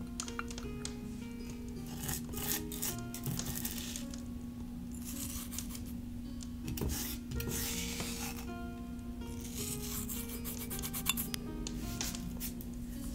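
Dry rubbing and rasping in short bursts of about a second each, made by hands working the potion ingredients, over soft background tavern music with a steady low drone.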